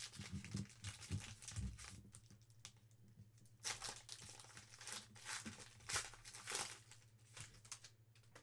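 Foil wrapper of a trading card pack crinkling and tearing as it is opened by hand, in a string of short, faint rustles.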